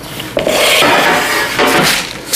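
Parchment paper rustling and rubbing on a metal baking sheet as the sheet is set down and the paper smoothed flat, a loud rubbing noise that starts suddenly about a third of a second in.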